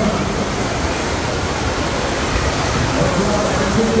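Steady rush of water from a FlowRider sheet-wave machine, a thin sheet of water pumped continuously up its ramp. Voices come in near the end.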